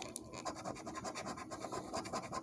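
A quarter's edge scratching the coating off a paper scratch-off lottery ticket in rapid, short strokes, fairly quiet.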